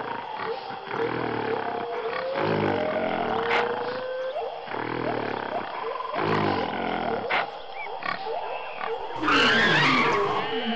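Roaring and growling from a monster, in about four low, drawn-out roars, with a louder, shriller cry near the end.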